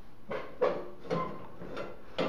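A few light knocks and clinks as a metal ladle is handled against a metal melting pot, four short hits spread over the two seconds.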